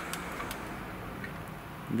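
A few light, separate clicks and ticks as a hand grips and tilts the front of a 1/14-scale model truck cab by its front wheel.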